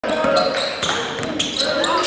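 A basketball dribbled hard on a sports hall floor, several sharp bounces, with short high squeaks of basketball shoes on the court and voices in the hall.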